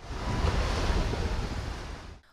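Outdoor sea ambience: waves washing with wind buffeting the microphone, a steady rushing noise with a heavy low rumble that cuts in and out abruptly.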